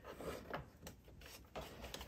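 Faint handling sounds from a vacuum's metal bottom plate being seated by hand: light rubs and a few soft taps spread through the moment.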